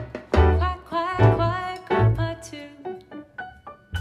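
A woman singing a jazz vocal over plucked upright bass notes, the phrases growing sparser toward the end.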